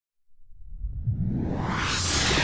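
Whoosh sound effect swelling up from silence, its hiss spreading higher as it grows louder, over a low rumble.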